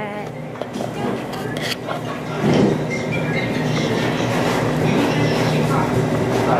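Steady low hum and murmur of a busy restaurant dining room, with rubbing and small knocks from a phone being handled close to the microphone.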